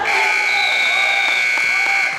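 Gym scoreboard buzzer sounding one steady, high tone for about two seconds and then cutting off, marking the end of a wrestling period, with crowd voices underneath.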